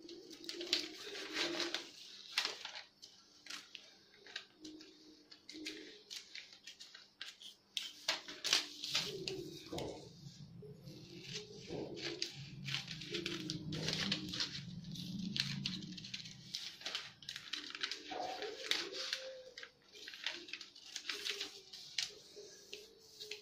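Scissors cutting through newspaper in a run of irregular crisp snips, with the paper rustling as it is turned and held. A low hum joins in through the middle stretch.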